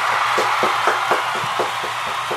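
Applause: hand claps about four a second over a dense, steady hiss of many hands clapping.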